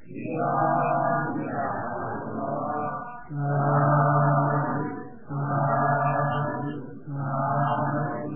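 Pali blessing chant sung in a low voice: a run of chanted syllables, then three long drawn-out held notes in the second half.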